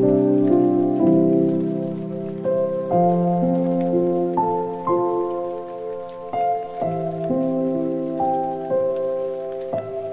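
Soft instrumental background music: a slow run of held notes, each chord changing every second or so.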